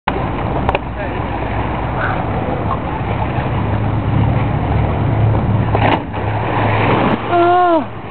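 A person diving from a wall into water: a steady low rumble underlies it, with a brief broad splash about six seconds in, then a man's voice calls out, falling in pitch, near the end.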